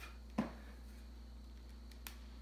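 A single sharp knock about half a second in, then quiet with a steady low hum.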